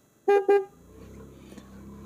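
Two short, quick toots of a vehicle horn at one steady pitch. A low, steady engine hum from the motorcycle being ridden follows.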